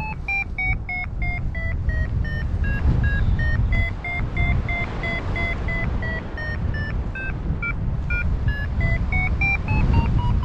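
Paragliding variometer beeping its climb tone, short beeps about three a second, the pitch falling, then rising and holding, dipping, and rising again near the end as the lift strengthens and weakens in a thermal. Under it runs a steady rush of wind noise.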